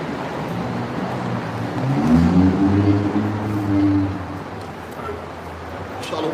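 A heavy vehicle's engine drone passing close by in city traffic, coming up about two seconds in, rising slightly in pitch as it accelerates and fading away a few seconds later, over steady street noise.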